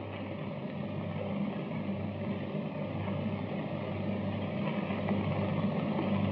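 Steady hiss with a low hum that swells and fades, the background noise of an early-1930s optical film soundtrack, with no dialogue or music.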